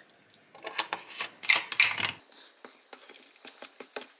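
Spoon clicking and scraping against a plastic food tub while rice flour and almond milk are stirred together, with a few sharper knocks about one and a half to two seconds in, then fainter clicks.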